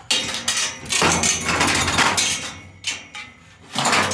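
Loud rattling and clattering with sharp knocks, like hard objects being handled and shaken. One long stretch is followed by a short burst about three seconds in and another near the end.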